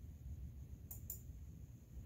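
Low, steady room rumble with two quick, faint clicks close together about a second in.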